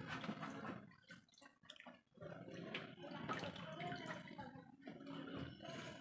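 Faint, irregular splashing and dripping of water in a plastic tray as a dissected heart is rinsed by hand to wash out clotted blood.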